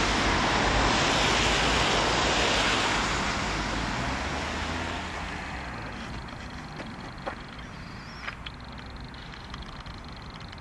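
Road traffic: the rushing tyre noise of passing cars, loud at first and dying away over about five seconds, leaving a quieter street background with a few faint clicks.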